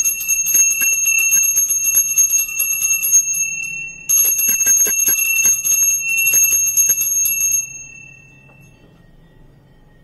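Small brass hand bell (puja ghanti) rung rapidly and continuously, with a short break about three and a half seconds in; the ringing stops near the end and its tone fades away.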